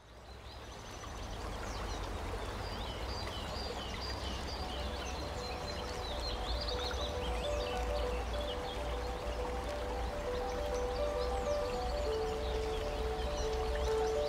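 Film soundtrack fading in: outdoor ambience with bird chirps over a steady low rumble. Soft sustained music notes come in about halfway, settling into one long held note near the end.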